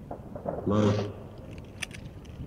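A man's voice calls out one short word about a second in, and a few faint, sharp metallic clicks follow near the end as soldiers handle their pistols on the firing line.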